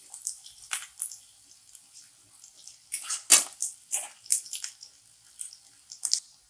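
A spatula scraping and knocking against a kadhai as chopped onion and green chillies are stir-fried in oil: a run of irregular scrapes, the loudest about three seconds in.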